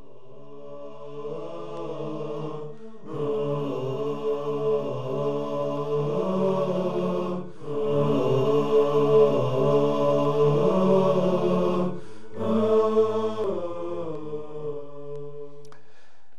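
A programme ident sung a cappella: layered voices chanting in long held notes with no instruments. It grows fuller about three seconds in and pauses briefly between phrases.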